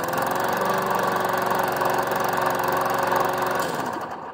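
Push lawn mower's small gas engine running steadily just after being pull-started, freshly started after sitting unused a long time. It cuts off near the end.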